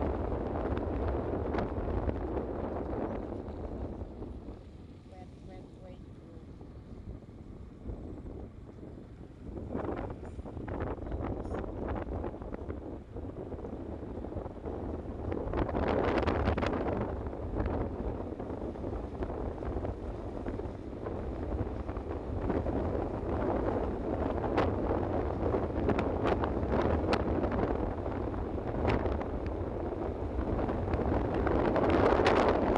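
Wind buffeting the microphone over the low rumble of a moving vehicle, with occasional clicks and knocks. It drops quieter for a few seconds early on, then grows louder again past the middle.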